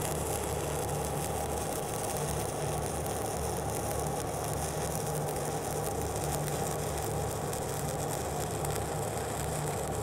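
Stick-welding (SMAW) arc of a 3/32-inch E6010 rod burning on 2-inch schedule 80 carbon steel pipe: a steady, continuous crackle with a low hum underneath.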